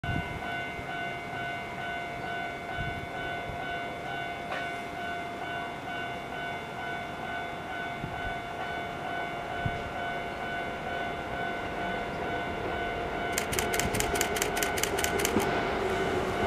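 Keihan 2400-series electric train approaching along the track, its rumble building over the last few seconds. Near the end comes a quick run of sharp clicks, about six a second, over a steady multi-pitched tone that holds throughout.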